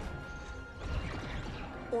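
Tense film score with a crash and a low rumble from about a second in, a sound effect of the starship under attack.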